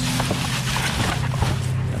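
Plastic trash bags rustling and crinkling, with a few clicks, as a hard plastic coffee-maker part is handled among them, over a steady low hum.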